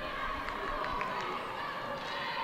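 Pitch-side ambience of a football match with few spectators: a steady background hush with faint distant players' voices and a short knock about a second in.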